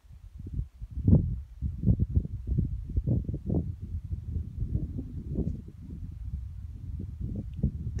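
Wind buffeting a phone microphone on an exposed ridge: an uneven, gusting low rumble that rises and falls every fraction of a second.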